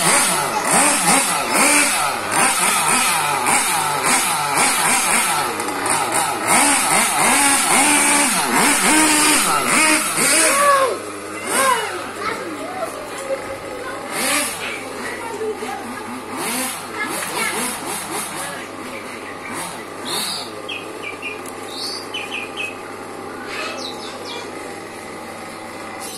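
Small nitro engine of a Hobao Hyper RC buggy (O.S. Speed engine) revving up and down over and over as the car is driven, loud in the first half and growing steadily fainter as it runs off down the street.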